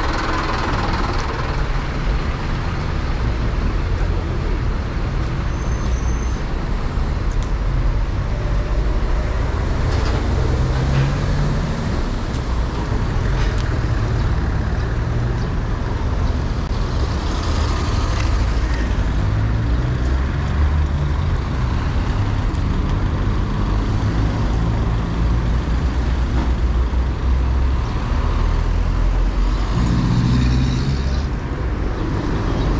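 City street traffic: the steady low rumble of car and truck engines, with vehicles driving through an intersection.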